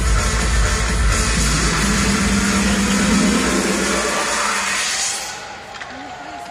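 Electronic dance music over an ice arena's sound system, a heavy bass beat that drops out about two seconds in, leaving a held low note; the music fades out about five seconds in.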